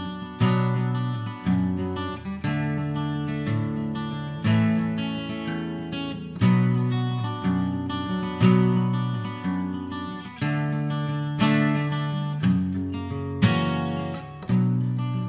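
Solo acoustic guitar strumming chords at a slow tempo, with a fresh strummed chord about every one to two seconds ringing out between strikes: the instrumental opening of a slowed-down acoustic arrangement of a heavy-metal song.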